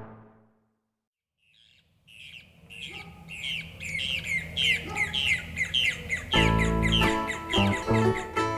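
A bird calling over and over, a quick falling chirp about two to three times a second. About six seconds in, music comes in loud over it.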